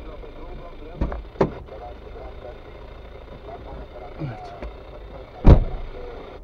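Low, steady rumble of a car heard from inside its cabin as it creeps slowly forward. Sharp knocks sound about a second in and again just after, and the loudest knock comes about five and a half seconds in.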